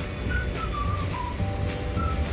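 Background music: a light tune whose whistle-like lead plays a short falling phrase that repeats, over held lower notes and a low bass.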